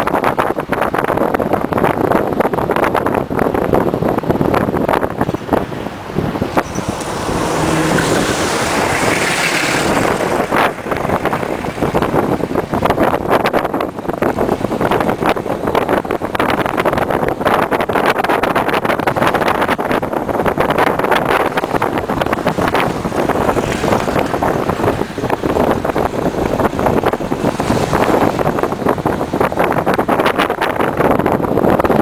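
Steady road and engine noise inside a moving taxi, with a brighter hiss rising for a few seconds about seven seconds in.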